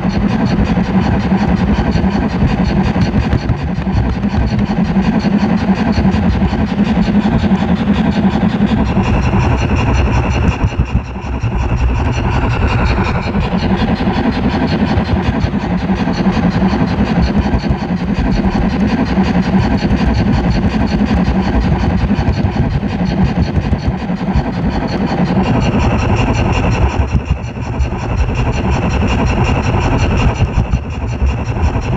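A gauge 0 model train rolling along its track, heard from a camera riding on the train: a steady rumble and clatter of metal wheels on the rails. A higher ringing tone joins it twice, about ten and twenty-six seconds in.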